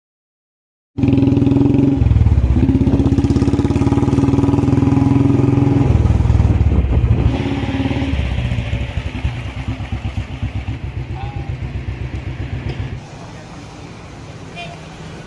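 Motorcycle engine starting loud and close about a second in, with a pulsing exhaust beat that rises and eases in pitch a couple of times. From about halfway it fades and its beat slows, dropping to a low street background near the end.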